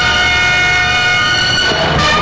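A loud, steady horn-like blare, one sustained pitch rich in overtones, that cuts off near the end.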